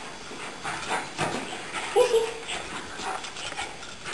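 Two puppies, a Keeshond and a golden retriever, play-wrestling on a hard floor: scuffling and scattered clicks, with one short puppy yip about two seconds in.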